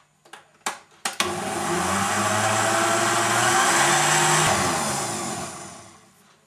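Countertop blender mixing a fruit smoothie with added protein powder: a few clicks as the side knob is turned, then the motor runs steadily for about four seconds and winds down near the end.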